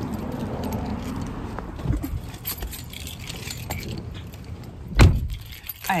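Getting into a car: keys jangling and small handling clicks, a thump about two seconds in, then a heavy thump about five seconds in as the car door shuts.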